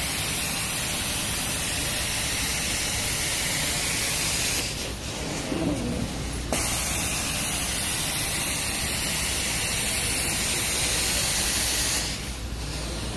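Carpet-cleaning extraction wand spraying hot water into a carpet and sucking it back up: a loud, steady hiss over a low rumble. The hiss stops for about two seconds a little before the middle, then starts again.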